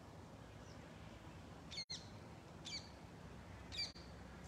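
A small bird calling: three short, high chirps, each falling in pitch, about a second apart.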